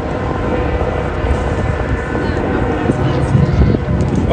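Ram 1500 pickup truck driving slowly past towing a loaded flatbed trailer: a steady low engine and tyre rumble, with wind on the microphone and faint voices.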